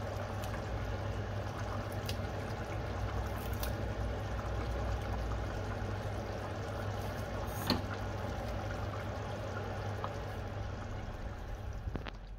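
Chicken curry simmering in a pot on a gas hob, the sauce bubbling steadily, with one sharp click a little before eight seconds in.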